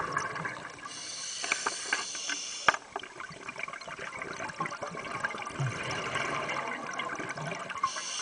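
Scuba regulator breathing heard underwater: bubbling at the start, then a hissing inhale of about two seconds that cuts off with a click, followed by a long bubbling, gurgling exhale, and the next hissing inhale beginning near the end.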